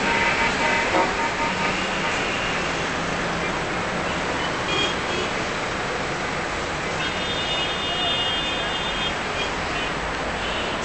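Steady road traffic noise from a busy city road below, with car horns sounding near the start and again for about two seconds later on.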